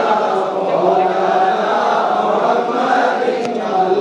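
A group of men chanting together in a drawn-out, steady melody, the voices sustained rather than broken into speech.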